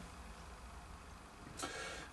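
Quiet room tone with a faint, steady low hum, and a brief faint hiss near the end.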